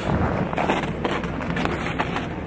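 Wind buffeting the microphone, a steady rushing noise.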